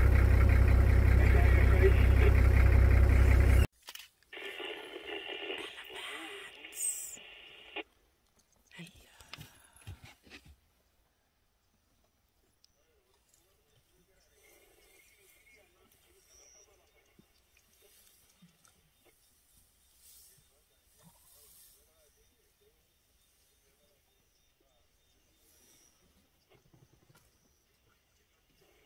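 A car engine running with a steady low rumble that cuts off abruptly about four seconds in. It gives way to faint, indistinct sounds and then near silence.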